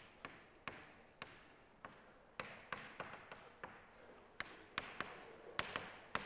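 Chalk writing on a blackboard: sharp, irregular taps as the chalk strikes the board, two or three a second, with a scratchy hiss of the strokes between them and a short echo after each tap.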